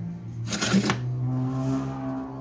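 Steel table extension of a sliding miter saw sliding along its support rods: one short scrape about half a second in, over steady background music.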